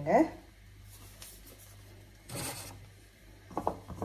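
Hands working poori dough in a glass bowl: a short rubbing rustle about halfway through, then light taps and knocks against the glass bowl near the end.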